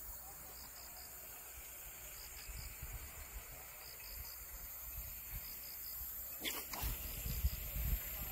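Faint insect chirping: short high chirps in groups of three, repeating about every second and a half over a steady high hiss. A brief knock with a low rumble comes about six and a half seconds in.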